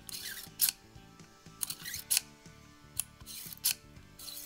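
Metal sliding and clicking of a Ruger single-action revolver's newly fitted Samson ejector rod being worked through the cylinder: short rasps of the rod travelling and about five sharp metal clicks, roughly a second apart. Faint background music plays underneath.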